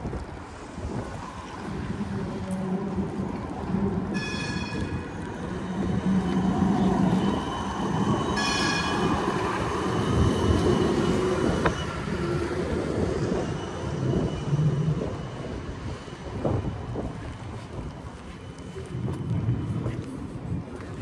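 Amsterdam city tram running past on its street rails, loudest around the middle. Two short ringing tones come about four and eight seconds in, and a thin steady whine from about nine to twelve seconds.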